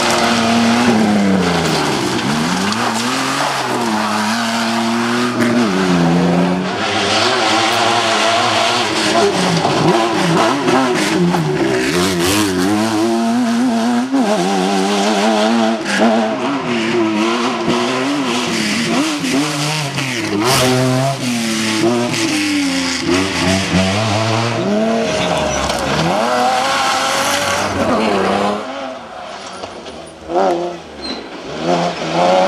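Cross-country rally 4x4 engines revving hard on a dirt stage, the pitch climbing and dropping again and again as they run through the gears and lift off. Near the end it falls away quieter.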